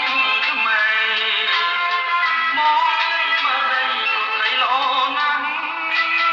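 Khmer pop song: a male voice sings a slow, held melodic line over a band accompaniment.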